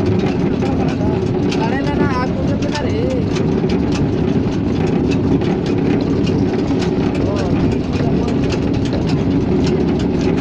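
Chura (flattened rice) machine running, pressing paddy in its rotating iron pan: a steady, loud mechanical rumble with dense clicking and crackling throughout.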